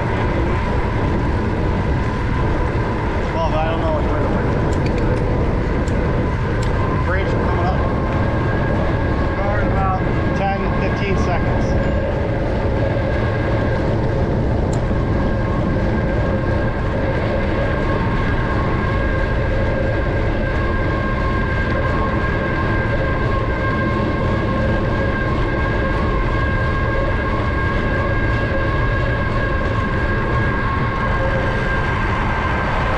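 Steady wind rush on a GoPro Hero 9's microphone while riding a bicycle along a road, with a constant high whine underneath and a few brief chirps around a third of the way in.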